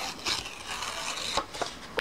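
Paper rustling and sliding under hands as a strip of sheet-music paper is folded over and pressed flat, with two soft taps about a second apart.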